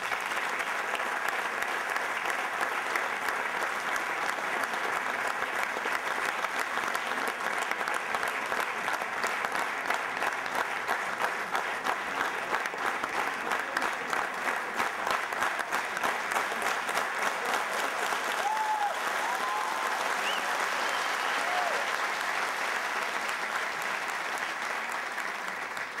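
Sustained audience applause, many hands clapping densely and evenly, with a few brief voices calling out over it about two-thirds of the way through.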